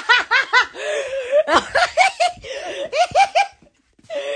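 A woman laughing hard in a quick string of high-pitched ha-ha's, breaking off abruptly near the end.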